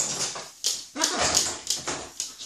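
Young blue-and-gold macaws giving a run of short, harsh, whiny calls, the sound of hungry birds begging around feeding time.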